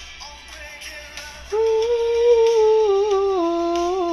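A man humming along to a pop song: after a quieter first second or so, one long held note that steps down in pitch near the end.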